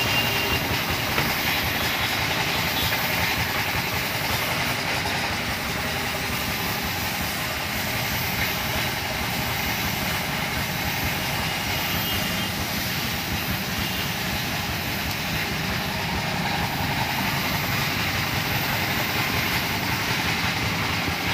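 HVLP paint spray gun hissing steadily as it sprays paint onto a car bumper, over a steady mechanical rumble.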